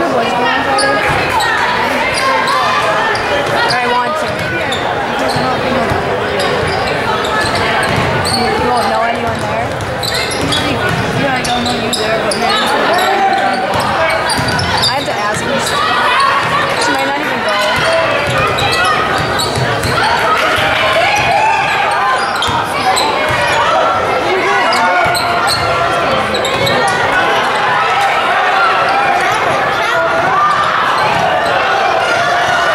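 Basketball game sound in a gymnasium: a ball bouncing on the hardwood floor among indistinct voices of players and spectators calling out, with the echo of a large hall.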